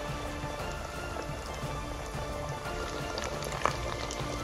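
A flour-and-cornmeal-coated rice patty deep-frying in hot peanut oil, sizzling and crackling steadily, with background music.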